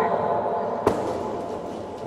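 A single sharp smack a little under a second in: a kick striking a handheld taekwondo kick pad, over the steady background noise of a large hall.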